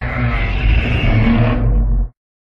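Godzilla (2014) monster sound effect: a low, rumbling growl lasting about two seconds. Its upper range fades in the last half second before it cuts off.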